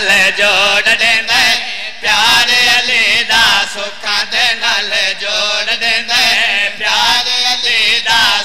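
A man's voice chanting a devotional qasida at a microphone, held on long wavering notes, with a short break about two seconds in.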